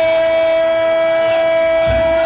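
A football commentator's excited shout, one vowel held on a single steady, high note throughout, a long drawn-out call.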